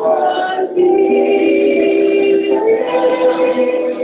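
A woman singing a song into a microphone, holding long notes.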